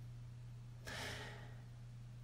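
A person's soft breath about a second in, lasting about half a second, over a steady low hum.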